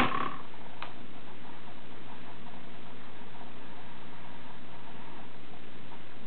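Steady background hiss with a low, even hum from the recording itself, and one faint click about a second in.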